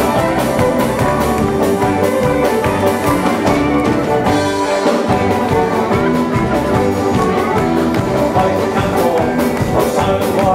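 Live folk band playing an instrumental passage on fiddle, banjo and guitar over a steady beat.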